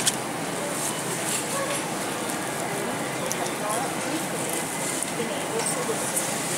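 Supermarket background: indistinct voices of other shoppers over a steady hum, with a few light clicks and rustles as cabbages are handled at a refrigerated produce case.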